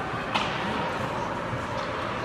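Indoor mall ambience: a steady hubbub of distant voices and echoing room noise, with one sharp click about a third of a second in.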